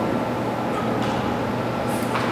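Steady room noise: a constant low hum under an even hiss, with no distinct events.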